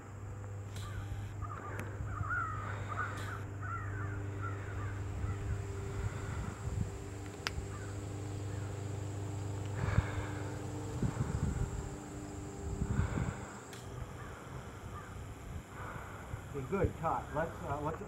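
Birds cawing, with faint voices, over a low steady hum that fades out about ten seconds in; a single sharp click about halfway through.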